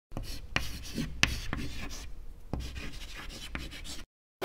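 Pen writing on paper: a run of scratchy strokes with several sharp ticks where the pen touches down.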